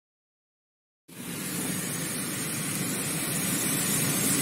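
Complete silence for about a second, then steady road and engine noise inside the cabin of a moving car, slowly growing louder.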